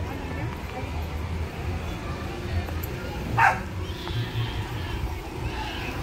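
A single sharp dog bark about three and a half seconds in, over faint background voices and a steady low rumble.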